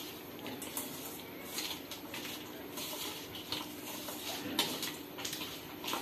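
Hands mixing raw fish with spices and oil in a stainless steel bowl: faint wet squishing, with a few sharp clicks against the metal bowl.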